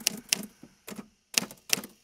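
Typewriter keystroke sound effect: about six sharp, irregularly spaced key strikes as the text is typed out letter by letter.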